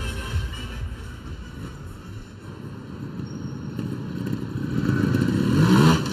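Trials motorcycle engine revving up in rising throttle blips, getting louder toward the end as the bike climbs onto an obstacle.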